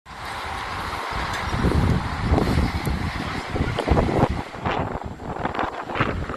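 Strong, gusty wind rushing and buffeting the microphone, with a low rumble that swells and drops from gust to gust.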